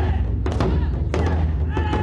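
Taiko drum ensemble playing: sharp drum strikes about twice a second over a continuous deep rumble of drumming.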